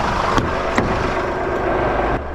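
Truck diesel engine idling, a steady low rumble, with two light clicks in the first second.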